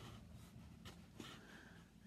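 Near silence, with a few faint rustles of the cross-stitch linen being handled, about a second in.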